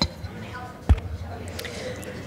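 Two dull knocks: a short one at the start and a louder thump about a second in. Faint voices murmur behind them.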